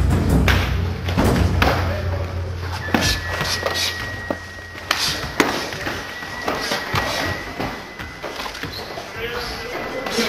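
Kicks landing on bodies during karate partner drills: a string of sharp, irregular impacts, with voices around them. Background music with a heavy bass fades out in the first few seconds.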